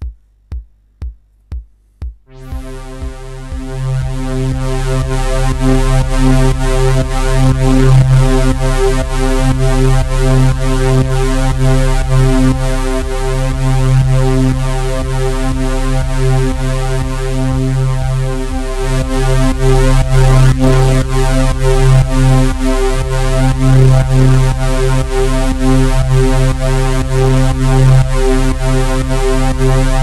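BeepStreet Drambo groovebox playing a sampled kick drum about twice a second. A couple of seconds in, a sustained synth pad chord swells in over it, its level ducked on each kick by a compressor sidechained to the kick track.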